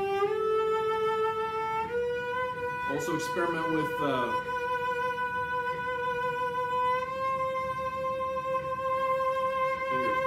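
Cello playing a slow rising scale in long, held bowed notes, high on the instrument, each note a step above the last. This is one-finger scale practice in G major, done to work on vibrato. A brief bit of voice comes in about three seconds in.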